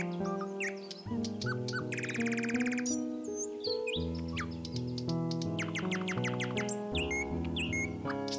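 Background instrumental music of held notes that change about once a second, with rapid bird-like chirping trills and short whistled swoops over it.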